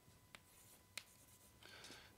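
Chalk on a chalkboard, faint: two sharp taps in the first second, then light scratching near the end as it writes.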